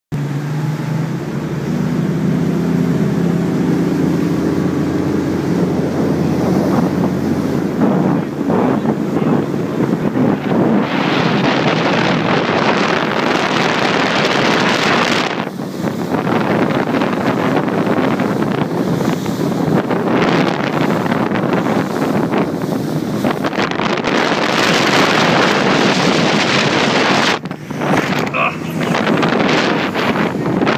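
Motorboat engine running with a steady drone for the first several seconds. Then heavy wind buffets the microphone and water rushes past as the boat runs at speed across choppy water.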